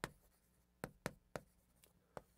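Chalk writing on a chalkboard: a few sharp, faint taps and short scratches as the strokes of characters are written.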